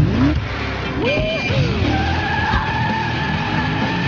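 BMW E39 sedan being driven hard: the engine revs rise and fall in quick surges, and from about two seconds in the tyres squeal in a long, steady, high tone.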